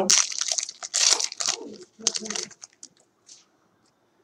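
Foil trading card pack wrapper crinkling and tearing as it is opened, dense for the first second and a half, then a few light clicks of the cards being handled that die away by about three seconds in.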